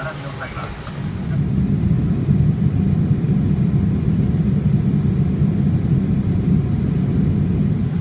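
Steady low rumble of a Boeing 787-8 airliner cabin, the noise of its air supply and engines, stepping up louder about a second and a half in.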